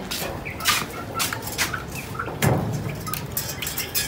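Hands tying a pole to a metal pipe: short rustles and knocks from the rope and pole being handled, with one louder knock about two and a half seconds in.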